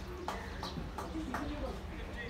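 Tennis balls being struck and bouncing on hard courts: a string of short, sharp knocks about three a second, with faint voices behind.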